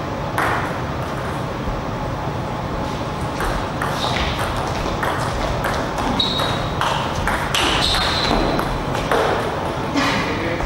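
Table tennis ball clicking off bats and table in a rally of quick sharp taps, with a couple of short high squeaks among them, over a steady low hum.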